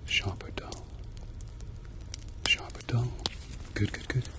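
A man whispering softly close to the microphone, broken by a few sharp clicks, with soft low thumps near the end.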